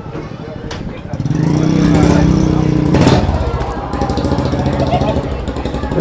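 A vehicle engine running close by, starting up about a second in, growing louder to a peak midway and easing off a little later. There is a sharp knock near the middle.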